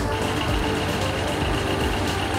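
Engine of a hydraulic conductor tensioner running steadily while it holds back the cable being pulled, with a steady high-pitched tone over it.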